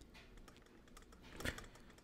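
Faint tapping of a stylus on a drawing tablet during handwriting, with one brief, slightly louder tap about a second and a half in.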